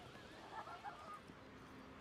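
Near silence: faint outdoor ambience, with a few faint, short sounds about half a second to a second in.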